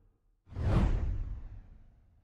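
Whoosh sound effect with a deep hit about half a second in, its hiss sweeping down in pitch, then fading away over about a second and a half.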